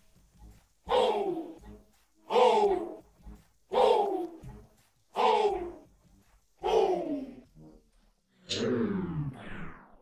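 Isolated vocal track with no backing music: a voice gives a short cry that falls in pitch, five times at even spacing, then a longer, doubled falling cry near the end.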